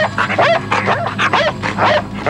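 Police drug-detection dog barking and yipping in quick short bursts, about four a second, as it works a search of a car.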